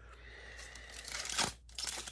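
Plastic trading-card packaging being torn open by hand: a short tear a bit over a second in, then crinkling of the wrapper near the end.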